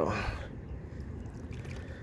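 Soft lapping and sloshing of shallow lake water as a largemouth bass is let go by hand and swims slowly off.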